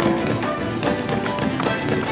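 Malambo zapateo: boots striking the stage floor in fast, rapid taps and stamps, over accompanying folk music.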